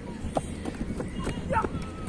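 A cricket bowler's run-up footsteps on dry, hard ground: a series of short thuds coming closer, with voices in the background.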